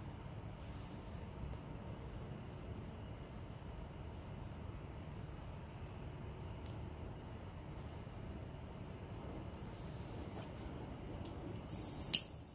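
Steady low background rumble with no distinct sounds in it.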